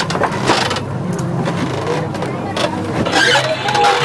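Indistinct voices over a steady low mechanical drone.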